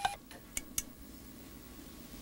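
Quiet room tone: a faint steady low hum, with three light clicks in the first second.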